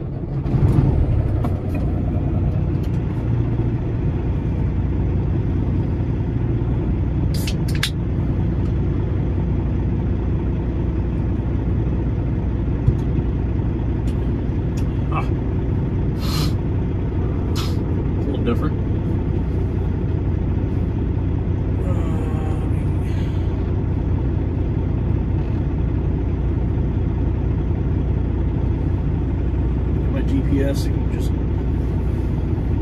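Semi-truck diesel engine idling steadily, heard from inside the cab. It grows louder about half a second in, then holds steady. A few short, sharp clicks or hisses come through over it.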